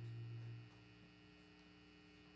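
A low sustained note from the band's amplified instruments fades out within the first second, leaving a steady electric hum from the amplifiers.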